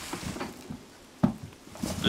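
Woven plastic-bag strands crinkling softly as they are pressed and handled, with one sharp knock a little past a second in.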